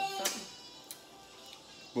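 A voice saying a drawn-out "Oh" at the start, then a quiet room with a single faint tap about a second in.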